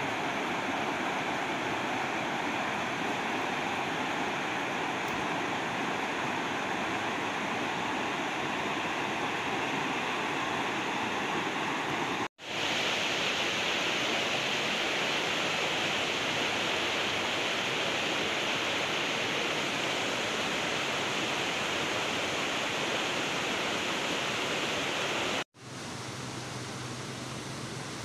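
Shallow rocky river rushing over stones in small rapids: a steady rushing hiss. It breaks off abruptly about twelve seconds in and again near the end, and after the second break the sound is quieter.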